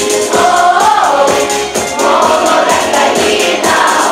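Choir singing with instrumental accompaniment and a steady beat.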